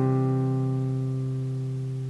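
A C major chord on a nylon-string classical guitar rings out and slowly fades. It is the final chord of the verse.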